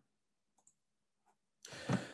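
Two or three faint clicks over near silence, then a short rush of noise beginning about a second and a half in.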